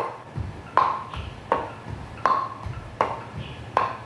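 Hollow wooden training bat striking the shins in steady rhythm, about six sharp knocks under a second apart, each with a brief ringing tone: Uechi-ryu karate shin conditioning.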